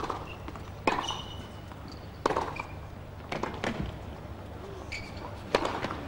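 A tennis rally: a ball struck back and forth by rackets, a sharp pop every second or so with a quicker pair about halfway through, and short shoe squeaks on the court between the hits.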